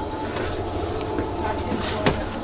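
Footsteps on wooden plank flooring over a steady low rumble, with one sharp step near the end.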